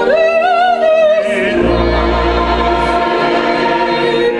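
Choir and chamber orchestra performing sacred classical music. One voice with a wide vibrato stands out over the first second, then a low bass note is held under the ensemble.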